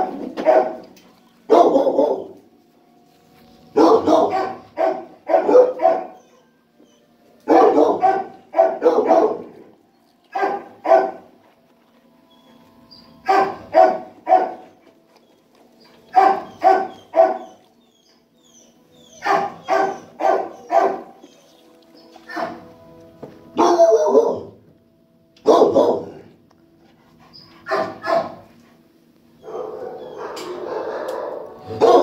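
A dog barking through the kennel bars in short bursts of two to four barks, a burst every few seconds.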